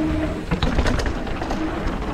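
Calibre Triple B mountain bike rolling fast down a loose gravel trail: tyres crunching over gravel and the bike rattling, with wind rumble on a body-mounted action camera and a short low hum near the start.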